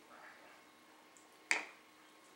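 A single sharp wooden click about one and a half seconds in, a puzzle piece knocked against a wooden puzzle board.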